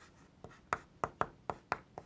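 Chalk writing on a blackboard: a run of short, sharp taps and strokes, about four or five a second, starting about half a second in.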